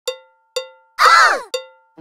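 Count-in click track: short, bright, cowbell-like clicks about two a second, steady in tempo. A louder, half-second sound with bending, sweeping pitch falls on the third beat.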